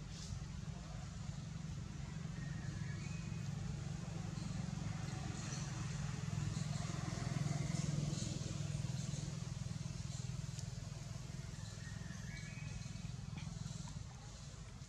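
Distant motor vehicle: a low steady hum that swells to its loudest about halfway through and then fades. A few faint short high chirps come near the start and again near the end.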